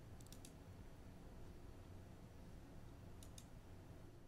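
Near silence with a low room hum, broken by a few faint computer mouse clicks, one small group about half a second in and another a little after three seconds.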